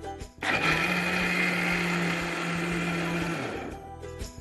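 Electric mixer grinder grinding soaked moong and chana dal into a paste: switched on about half a second in, it runs at a steady pitch for about three seconds, then is switched off and spins down with a falling hum.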